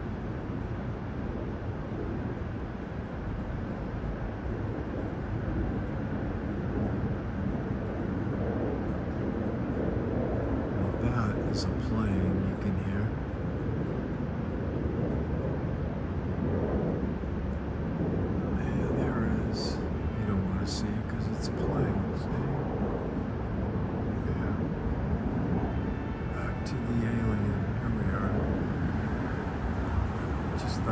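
City street ambience at night: a steady low rumble of traffic, with indistinct voices talking faintly and a few brief high clicks in the middle.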